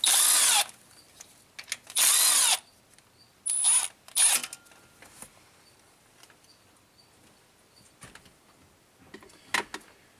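Cordless power tool with a socket spinning bolts out of the engine's front timing components in short runs: two of about half a second, two seconds apart, then two shorter ones soon after, followed by a few faint clicks near the end.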